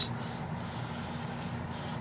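Sharpie felt-tip marker drawing lines on paper: a dry, high rubbing scratch, one long stroke and then a shorter one near the end, as a box is drawn around a written answer.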